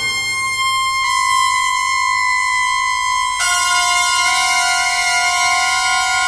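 Jazz orchestra's wind instruments holding long sustained chords, played back from a mono LP record. The chord changes about a second in, and a lower note enters about three and a half seconds in.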